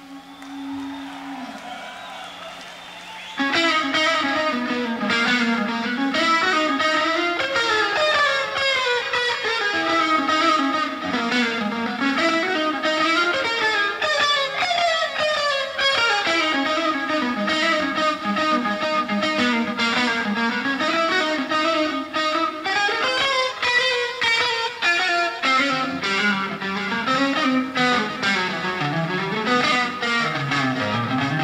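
Live hard-rock soundboard recording: a distorted electric guitar plays a lead. A quieter held sound comes first, then about three and a half seconds in, loud, fast runs of notes climb and fall.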